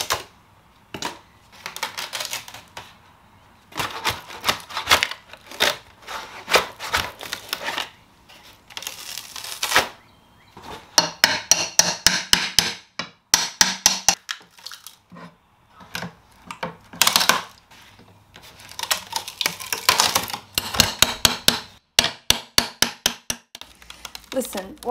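Hammer striking a flat pry bar driven in under the wooden panels of an old cedar chest: irregular knocks at first, then fast runs of strikes in the second half, with scraping of metal on wood between.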